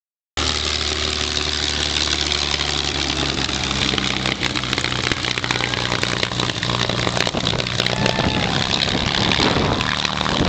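A P-51D Mustang's Packard-built Merlin V12 engine running steadily at low taxi power as the fighter rolls past a few metres away, the propeller turning. The sound comes in about half a second in and grows rougher and more gusty in the second half as the spinning propeller passes close.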